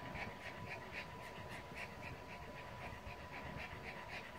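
Pug panting softly and quickly, about four short breaths a second.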